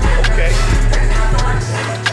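Loud music with a heavy bass line and a steady beat. The deep bass drops out near the end.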